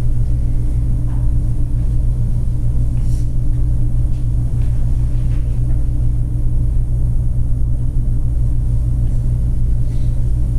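A steady low hum and rumble, unchanging throughout, with only a few faint small sounds above it.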